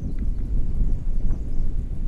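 Wind buffeting an action camera's microphone in flight under a tandem paraglider: an uneven low rumble.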